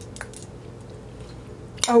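A metal spoon clicking a few times against a ceramic soup bowl, over a faint steady hum.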